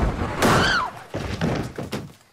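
A thunk, then a short high squeal that rises and falls, followed by a few knocks.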